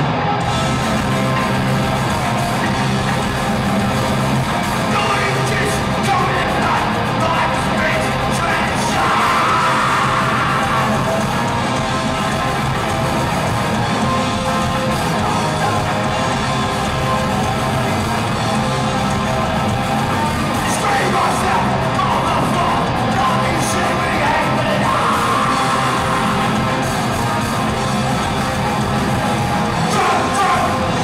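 Live punk band playing loud, with electric guitars, drums and a shouted lead vocal through the microphone. The full band comes in right at the start.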